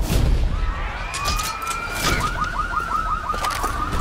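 An emergency-vehicle siren: a tone rises into a steady wail about a second in, then switches to a fast yelp of about six or seven warbles a second, over a low rumble.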